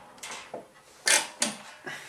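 Handling noise from a satellite LNB on its plastic dish arm being lifted and turned: about five short knocks and scrapes, the loudest about a second in.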